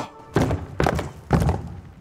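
Three heavy, hollow thunks, evenly spaced about half a second apart, in a break in the music.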